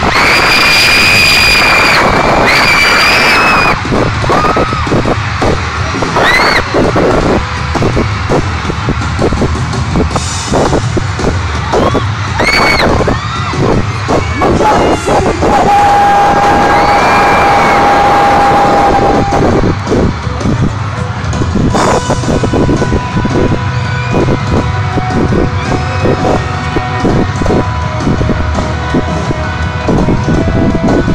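Loud live rock music over an arena PA, with a steady pounding drum beat. A crowd screams high-pitched over it in the first few seconds and again now and then.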